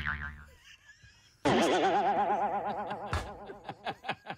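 Cartoon 'boing' sound effect with a wobbling pitch, heard twice: the first rings out in the opening half second, the second starts about a second and a half in and fades away over about two seconds.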